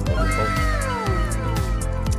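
Background music with a steady beat, over which a cat meows once: a single long call that falls in pitch over about a second and a half.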